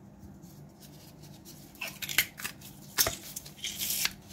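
Metal garlic press crushing garlic cloves: a few short clicks and squelches as the handles close and the pulp is forced through, starting about two seconds in.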